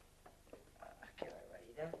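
Footsteps on a hard corridor floor, a step about every half second or more, with a woman's low, murmured voice coming in during the second half.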